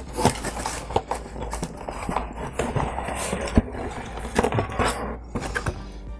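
A cardboard box being opened and unpacked by hand: the lid scraping and paper packaging rustling, with a scatter of small knocks and taps as items are lifted out.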